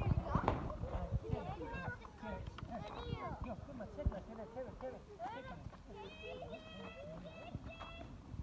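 Several young children's voices chattering and calling out, with one sharp knock about four seconds in.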